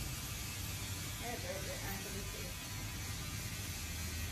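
Barbershop room tone: a steady low hum with faint voices in the background from about a second in.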